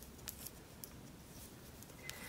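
A few faint, sharp clicks of metal knitting needles tapping against each other as purl stitches are worked.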